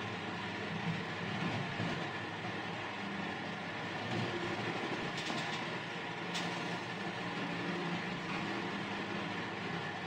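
Several electric cooling fans running in the room: a steady whirring hum. Two faint clicks sound about five and six seconds in.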